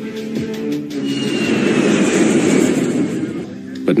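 Documentary background music, joined about a second in by a swelling rushing noise with a faint falling whistle in it, which eases off near the end.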